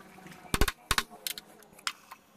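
A handful of sharp metal clinks and knocks from steel tooling being handled at a drill press, the loudest pair about half a second in and single lighter ones after.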